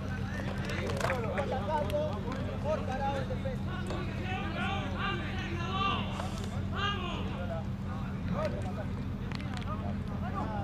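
Players and coaches shouting and calling out on a football pitch, with a cluster of loud calls between about four and seven seconds in. A steady low hum runs underneath.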